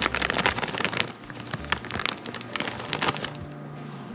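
A bag of rice flour being handled and poured into a plastic measuring cup: a dense run of small crackles from the bag and flour, busiest in the first couple of seconds and thinning out toward the end.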